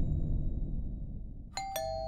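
Two-tone doorbell chime about one and a half seconds in: a higher note and then a lower one, struck a fraction of a second apart and left ringing, over a low rumble.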